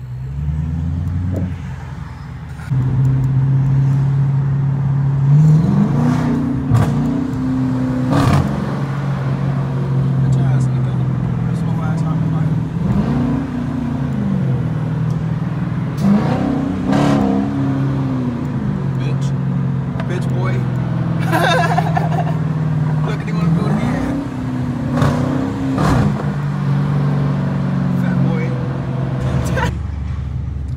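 Dodge Challenger R/T's 5.7-litre Hemi V8 heard from inside the cabin while driving in town traffic. Under the steady drone its pitch rises and falls several times as the car accelerates and eases off.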